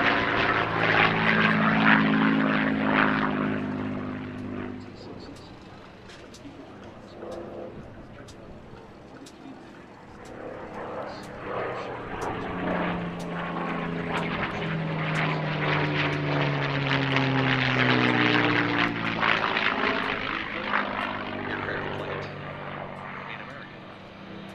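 A P-51D Mustang's Packard V-1650 Merlin V-12 engine and propeller in flight overhead. It is loud at first, fades away for several seconds, then swells again, its pitch falling as it sweeps past.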